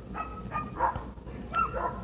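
A dog barking faintly, a few short barks scattered through the moment, over a steady low hum.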